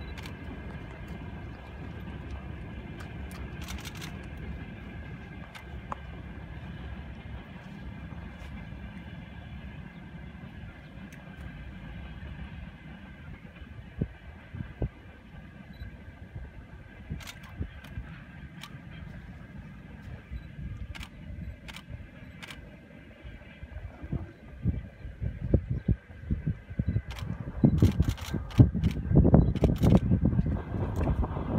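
Steady low outdoor rumble with faint steady high tones, broken by scattered clicks; in the last few seconds louder bumps and gusts of a handheld phone being moved.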